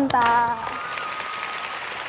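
A woman's sung note ends about half a second in, followed by a studio audience applauding steadily.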